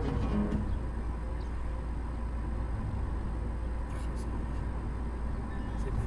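Steady low rumble of a car's engine and tyres on the road, heard inside the moving car. The tail of plucked-string music fades out in the first half-second.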